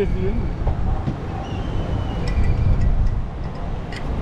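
Steady low rumble of busy street traffic, with a few faint high tones and light ticks in the middle.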